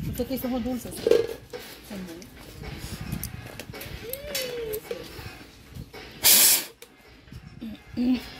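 Faint voices in the background, with a short loud rushing hiss about six seconds in.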